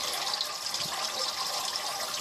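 Steady splashing of water from a Turtle Clean 511 canister filter's spray bar falling into a turtle tank.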